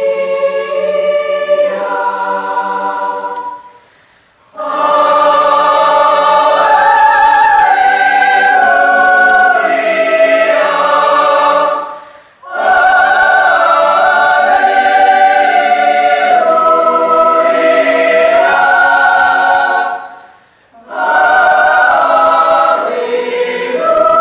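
Mixed-voice choir singing unaccompanied under a conductor, in long sustained phrases with brief breaths between them about 4, 12 and 20 seconds in.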